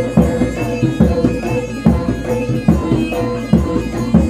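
Live East Javanese jaranan gamelan music: a low drum struck about once a second under a sustained, reedy wind-instrument melody.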